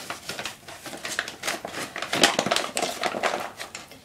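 Plastic food bag crinkling and crackling as it is squeezed and handled, in irregular bursts that are loudest a little past halfway.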